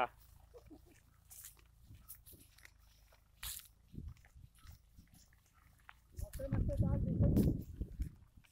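Faint scattered rustles and steps through dry grass, then a person laughing near the end over a low rumble on the microphone.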